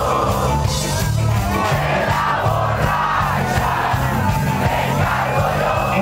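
Live rock band playing loudly with voices singing and shouting over it. Heard from inside the audience, with crowd voices mixed in.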